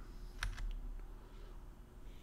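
Two faint clicks of computer keys, about a quarter second apart, a little way in, over a low steady hum.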